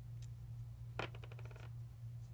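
A strip of washi tape pulled off its roll and torn: a sharp click about a second in, then a quick rasping run of tiny clicks for just over half a second.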